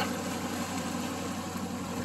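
Boat engine running steadily: a low, even drone under a steady hiss.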